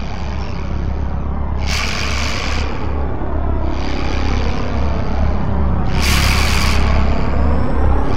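A loud, steady low rumble under a wash of noise, broken by two short bursts of hiss about two and six seconds in.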